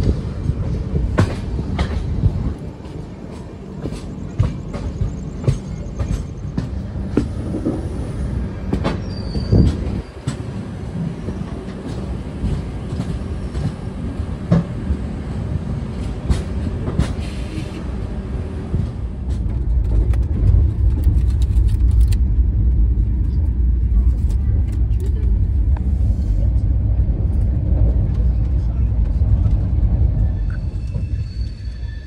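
Indian Railways passenger train running at speed, heard from the coach doorway. The wheels click sharply over rail joints above a low rumble. About two-thirds of the way in, this gives way to a louder, steady low rumble as the train runs past a freight train.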